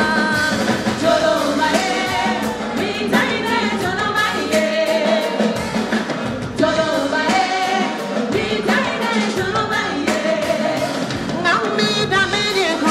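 Live West African pop band with women singing lead vocals over a steady drum beat and bass.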